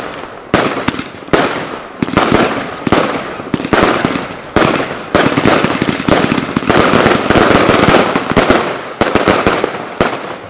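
Geisha Collision Thunder compound fireworks cake firing a steady string of shots, about one every three-quarters of a second, each sudden bang trailing off into a noisy decay. The shots crowd together and are loudest from about six to eight and a half seconds in.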